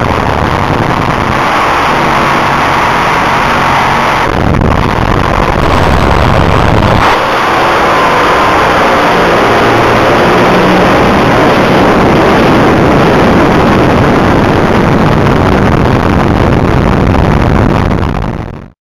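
Top Fuel dragster heard from inside the cockpit: a loud, unbroken mix of engine and rushing air. The sound changes in character about four seconds in and again about seven seconds in.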